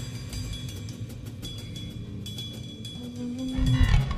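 Free-improvised jazz from a drums-and-bass duo playing quietly: sparse light taps on the drum kit, a held bass note entering about three seconds in, then a louder run of drum hits near the end.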